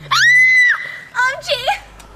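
A young woman's high-pitched shriek, one held note lasting most of a second, followed by a shorter, wavering squeal.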